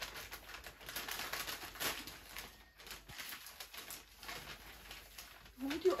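Christmas wrapping paper rustling and crinkling in irregular bursts as it is handled and unfolded carefully rather than torn open.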